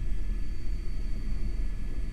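Airbus H125 helicopter in a hover, heard from inside the cockpit: a steady low rumble from rotor and engine.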